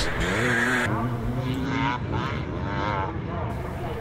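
Classic twin-shock motocross bike engines racing, the note rising as a rider accelerates out of the corner and then wavering as the throttle is worked.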